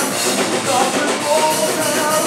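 Live metal band playing: electric guitar, bass guitar and drum kit together, loud and dense.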